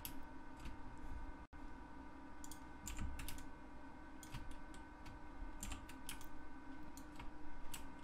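Faint computer keyboard keystrokes and mouse clicks, irregularly spaced, over a steady low electrical hum. These are the key presses and clicks of Blender shortcuts and border selection.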